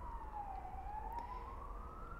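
Faint emergency-vehicle siren wailing. Its single tone falls in pitch for under a second, then climbs slowly again.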